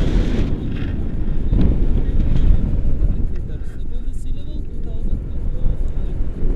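Wind buffeting the microphone of a pole-mounted action camera during a tandem paraglider flight: a loud, uneven rumble.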